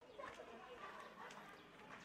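Faint street ambience with soft, irregular clicks of footsteps on a paved lane.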